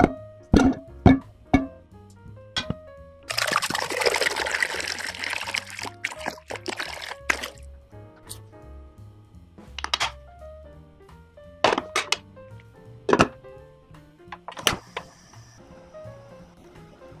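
Background music throughout. Over it come a few sharp knocks as small potatoes go into a metal pot, then water pours into the pot for about four seconds, followed later by several more clinks and knocks at the pot.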